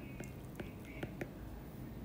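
Faint, light ticks of a stylus tip tapping and sliding on an iPad's glass screen while a word is handwritten, about three or four ticks a second.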